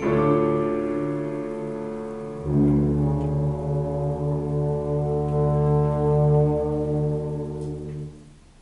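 Concert wind band playing long held chords with deep low brass. A fuller, lower chord comes in about two and a half seconds in, and the whole band cuts off together near the end.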